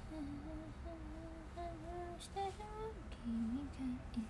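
A woman humming a slow tune with her mouth closed. The notes climb step by step and then drop to lower notes near the end, and a few faint clicks come about halfway through.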